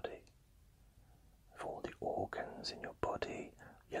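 A man's whispered speech: a pause of about a second and a half, then soft whispered words.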